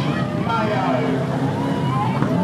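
A banger racing car's engine running at low speed as it rolls slowly past, with people's voices talking around it.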